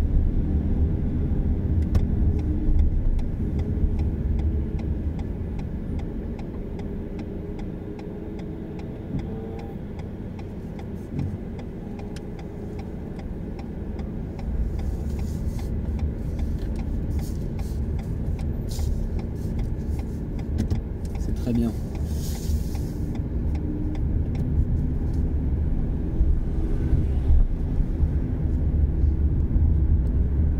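A car driving, heard from inside its cabin: a steady low rumble of engine and road noise. It eases off for several seconds in the middle, then builds again as the car picks up speed.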